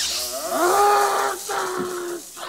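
A man's long, drawn-out cry of pain, rising at first and then held at one pitch for over a second, with a second, shorter cry near the end.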